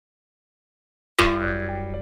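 Silence, then about a second in a sudden sound effect: a loud, ringing pitched tone with a low rumble beneath it that fades away.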